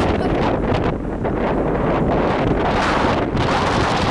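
Wind buffeting the microphone on the open deck of a moving ferry, coming in gusts that rise and fall.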